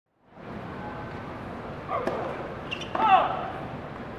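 Tennis rackets striking the ball: a serve about two seconds in and a return just under a second later, the second hit with a loud vocal grunt, over a steady murmur of stadium crowd.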